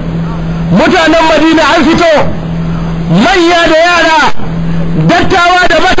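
A man's voice preaching in three phrases. A steady low hum is heard in the pauses between the phrases.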